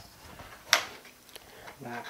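A single sharp click a little under a second in: a RAM module being released from the spring-loaded side clips of a MacBook Pro's memory slot.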